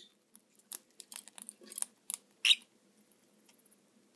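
A lovebird picking through a plastic bowl of sprouts and seed, making a scattering of short, faint clicks and rustles with its beak and feet against the bowl and food.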